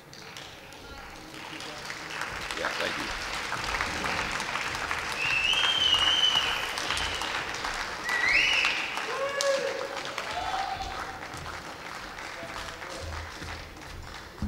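Banquet audience applauding, swelling over the first few seconds and tapering off later. Two short, shrill whistles and a few shouts come about midway.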